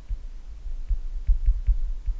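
Stylus writing on a tablet, picked up through the desk and microphone as irregular low thumps with a few faint taps.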